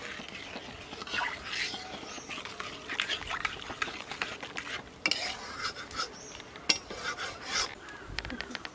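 A metal spatula stirring and scraping fish curry in a black kadai, with irregular scrapes and sharp clicks of metal on the pan.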